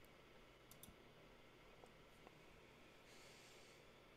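Near silence: room tone with a few faint, sharp clicks in the first half and a faint short hiss near the end.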